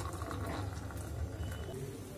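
Hot milky coffee poured from a steel pot into a glass cup, trailing off in the first half-second, over a steady low rumble that fades near the end.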